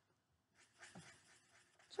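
Faint sound of a black Sharpie marker drawing little circles on red construction paper, starting about half a second in.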